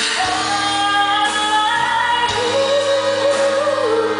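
A woman singing a pop ballad live into a microphone with band accompaniment, her line climbing and then holding one long note through the second half.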